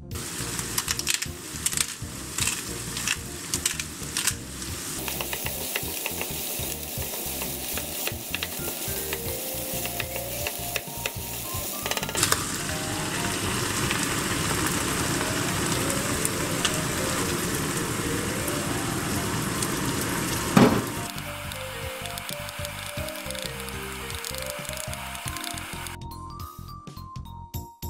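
Minced meat and chopped vegetables sizzling in a frying pan, with taps and scrapes from stirring in the first few seconds. About halfway through the sound changes as canned tomatoes go into the pan and the sauce keeps sizzling. A short loud sound comes near the end.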